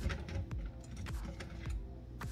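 A few light clicks and clinks of kitchen cutlery as a fork is fetched, over faint background music.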